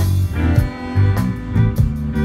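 Live Cajun band playing an instrumental passage: button accordion, electric guitar and electric bass over a steady drum beat.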